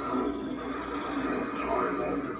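Sound effects from the Home Depot Inferno Reaper animatronic's speaker between its spoken lines: a steady low drone with a voice-like sound wavering over it, louder near the end.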